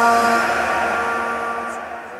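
A held sung note of a devotional naat dies away into reverberation, its level falling steadily as the recitation fades out.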